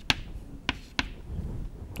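Chalk writing on a chalkboard: several sharp taps and short clicks as question marks are written and dotted.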